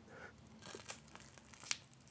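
Faint scraping and a few light clicks from a wooden applicator stick working hot melted nose wax in a small plastic cup, with the sharpest click near the end.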